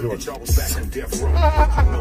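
Hip hop music with a rapped vocal over a heavy bass line.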